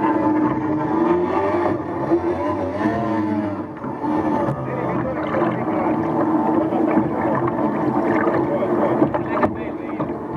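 Outboard racing boat engines running on the water, a steady engine note with a pitch that rises and falls briefly about two to three seconds in.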